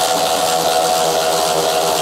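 Cordless power tool motor running steadily at one even pitch, spinning a 15 mm socket on a 6-inch extension to back off a master cylinder mounting nut on the hydroboost.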